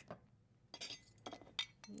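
Metal utensils clinking against dishes: a handful of light, separate clinks spread across the moment.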